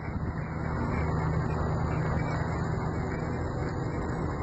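A car engine running steadily close by, a low even hum.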